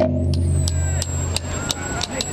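Tahitian drum ensemble pausing between rhythms: a low drum tone dies away over about a second, with a few scattered sharp strokes, while a steady high-pitched whine runs underneath.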